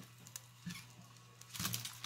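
Soft handling sounds as cabbage halves are set into a pot of vegetables in water: a few light knocks and rustles, the loudest near the end, over a faint low steady hum.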